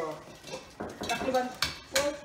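Metal cutlery clinking and scraping against a frying pan on the stove, with several sharp clinks in the second half.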